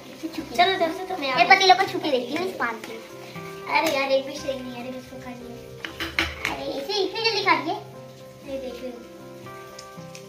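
Children's voices talking in short bursts over steady background music.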